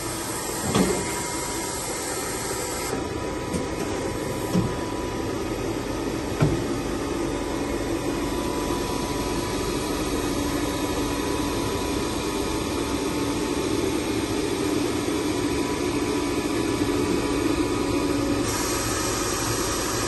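Steady electric machinery hum of a powered-up Polar 115 ED paper guillotine running idle, with a few light knocks in the first seven seconds.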